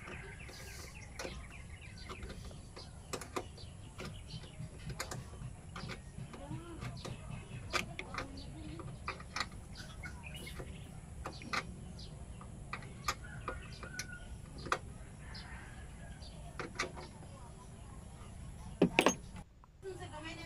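Scattered small clicks and taps of hands handling wiring and plastic parts behind a car's headlight, with a steady low hum underneath and two louder clicks near the end.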